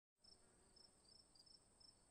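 Near silence with faint, high-pitched insect chirps, crickets by their sound, repeating every half second or so over a steady faint high tone.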